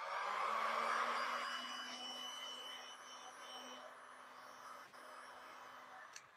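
Handheld electric heat gun switched on, its fan motor spinning up with a rising whine and then running with a steady hum and airy rush that slowly grows quieter.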